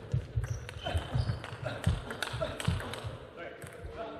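Table tennis rally: the celluloid ball clicks sharply off the bats and table in quick succession, about two hits a second, with thuds of the players' feet on the court floor.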